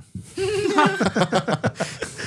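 A small group of adults laughing together: a drawn-out, wavering vocal note first, then quick repeated laughs.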